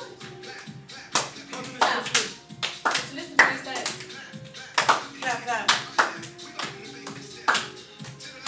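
A group clapping their hands while rehearsing a dance routine, loud sharp claps coming unevenly, over music and voices.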